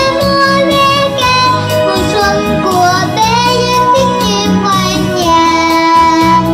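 A young girl singing a Vietnamese children's song into a microphone over instrumental accompaniment with a steady beat.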